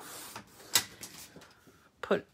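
Small sliding paper trimmer cutting a sheet of patterned paper: a soft scraping hiss as the blade carriage is drawn along its track, then a sharp click a little under a second in, followed by a few faint taps.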